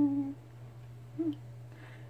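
A woman's voice in a small room: a short held, hummed note that slides down at the start, then a brief higher vocal sound a little over a second in, over a steady low hum.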